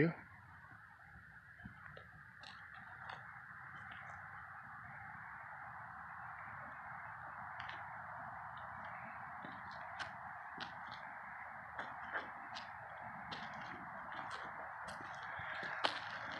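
Faint steady outdoor hiss with scattered light ticks and footsteps on cracked asphalt; the steps come more often near the end.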